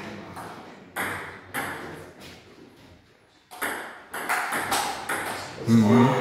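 Table tennis ball being hit back and forth: sharp pings of the ball on paddles and the table, a few spaced hits and then a quicker run of them in the second half.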